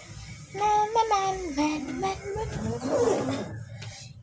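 A young child's high voice vocalising in long, drawn-out tones that slide up and down in pitch, like a wordless whine or sing-song call.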